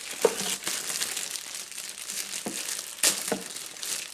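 Clear plastic poly bag crinkling and crackling as hands handle a packaged fabric bag, with sharper crackles near the start and about three seconds in.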